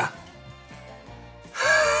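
Quiet background music with low bass notes, then, about one and a half seconds in, a person lets out a long, high moan of disgust at a foul taste.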